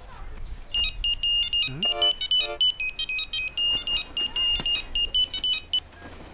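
Mobile phone ringtone: a rapid, high electronic beeping melody that repeats for about five seconds, then stops as the call is answered.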